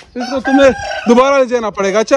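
A rooster crowing loudly.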